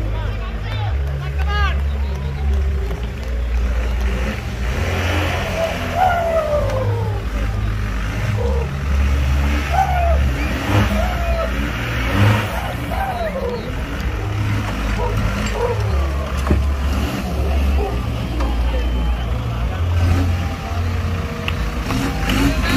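Engine of a modified off-road 4x4 revving under heavy load, its low rumble swelling and dropping as it claws up a steep dirt mound, with spectators' voices and shouts over it.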